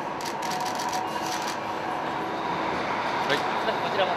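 Busy background murmur of distant voices and a steady hum, with a quick run of sharp clicks in the first second and a half.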